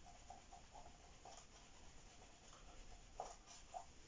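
Faint swishing strokes of an eraser wiping a whiteboard, a series of short swipes in the first second and a half, followed by a couple of faint clicks near the end.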